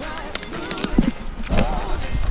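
A man grunting and breathing hard under the load of a whole red deer carried on his back, with short voice sounds, the loudest about one and a half seconds in. Scrub brushes against him and wind rumbles on the body-worn camera's microphone.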